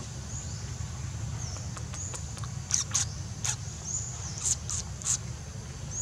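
Short, high-pitched animal chirps and squeaks, a few scattered and a cluster of sharper ones in the middle, over a steady low rumble.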